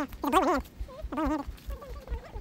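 A person laughing in several short bursts of wavering, trembling pitch, with low footstep thuds underneath.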